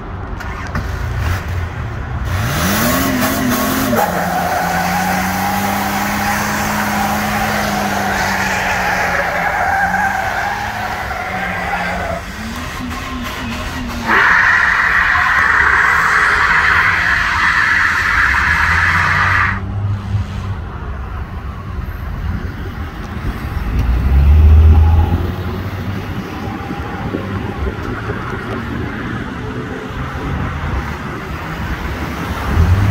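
Old Dodge Dakota pickup doing a burnout: its engine revs up about two seconds in and the rear tyres spin and squeal for about ten seconds, dip briefly, then squeal again louder for about five seconds before cutting off. Near the end comes a short, loud low rumble.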